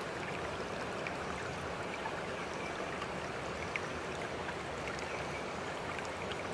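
Steady running water, an even hiss with a few faint ticks.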